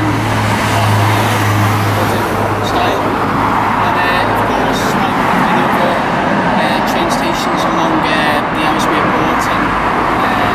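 Road traffic: cars passing on the road alongside, a steady rush of engine and tyre noise with a low engine hum in the first couple of seconds.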